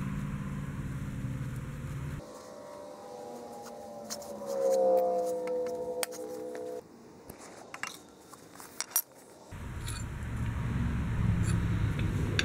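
Small metal clicks and clinks as pliers pull a cotter pin and steel hitch-linkage parts are taken apart, with a steady low hum underneath. For a few seconds in the middle the sound is fast-forwarded: the hum rises to a higher, wavering whine and the clinks come quick and sharp, until the hum returns near the end.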